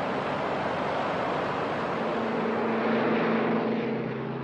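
Propeller aircraft engines droning steadily, with a steadier engine tone coming up about halfway through.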